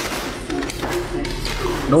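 A faint voice in short broken phrases, with a few light knocks from handling.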